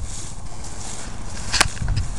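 Low rumbling noise on the microphone, with a single sharp click about one and a half seconds in.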